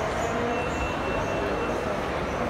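Steady indistinct crowd chatter and general hubbub of a large indoor shopping mall atrium, with no single voice standing out.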